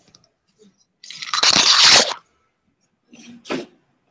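Loud scraping and rustling close to the microphone for about a second, the noise of someone getting up and moving away from the computer, then a shorter, softer scrape and a knock near the end.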